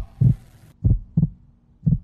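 Heartbeat sound effect: four deep, short thumps, the middle two close together like a lub-dub, laid on as suspense while the pair decide whether to press their buttons.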